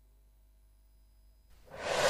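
Near silence, then about one and a half seconds in a rising whoosh swells up: the transition sound effect of a broadcast replay graphic.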